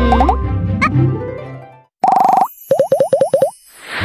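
Cartoon children's music with playful sound effects: rising boing-like glides over the tune, which stops just before two seconds. Then come a short held warbling tone, a quick run of about seven rising chirps, and a shimmering whoosh near the end.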